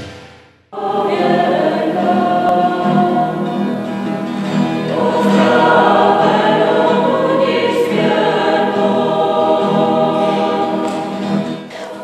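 A mixed church choir of men's and women's voices singing a slow, sustained piece in a church, cutting in suddenly under a second in as a news intro jingle fades out.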